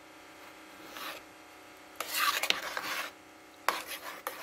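A spoon stirring thick, creamy steel-cut oatmeal in a slow cooker's crock, a wet scraping rasp. A faint stroke comes about a second in and a louder one from about two to three seconds, with a light click of the spoon against the pot.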